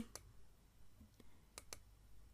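A few faint computer mouse clicks against near silence, spread out with two close together near the end.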